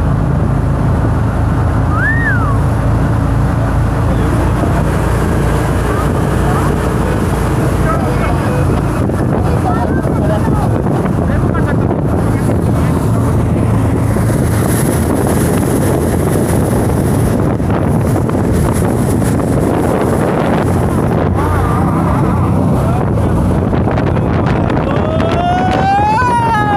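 Jet boat running at speed across a lake, its engine and water noise loud and steady, with wind buffeting the microphone. A few brief cries from the riders rise above it, the longest a rising then falling cry near the end.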